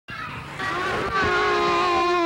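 A young child's voice in long, drawn-out wails, each held high for about a second before sliding down in pitch.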